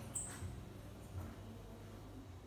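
A brief, very high-pitched squeak just after the start, over faint low bumping.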